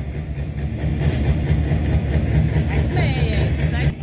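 Rally car engine idling with a steady, deep rumble.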